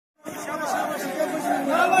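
A crowd of protest marchers chanting and calling out, many voices overlapping.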